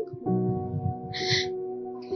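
Soft background music holding a sustained chord, which changes about a quarter second in, with a short breathy sound about a second in.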